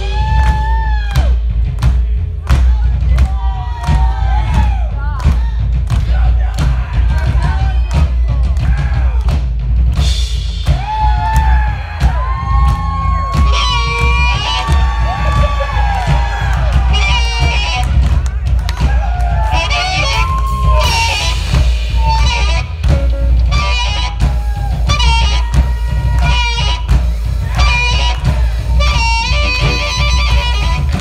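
Live rock drumming on a full drum kit, struck hard and fast, with electric guitar notes bending over it and crowd noise underneath.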